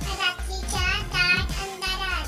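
A high, child-like voice singing over background music with a low bass line.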